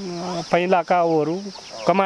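A woman speaking, her voice carrying on without a break, over a steady high-pitched insect drone.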